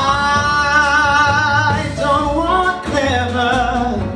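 Male jazz singer holding a long note with vibrato for about two seconds, then moving through a few shorter notes, over upright bass and piano.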